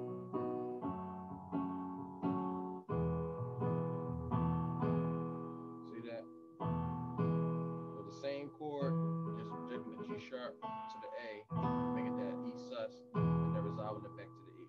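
Keyboard with a piano sound playing repeated rock-style chord stabs, the left hand holding a root-and-fifth power chord, moving from a B major chord to an E major chord about halfway through.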